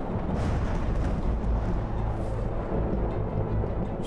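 Dramatised storm sound: a deep, steady rumble with wind rushing over it, mixed with ominous background music.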